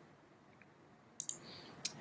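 Computer mouse clicks near the end, picking a point on screen, after about a second of near silence.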